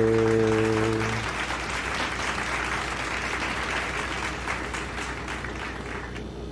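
A held musical note for about the first second, then applause that slowly fades.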